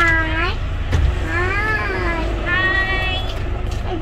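A young child's voice making three long, drawn-out sing-song calls, each rising and falling in pitch, over the low steady rumble of a car idling.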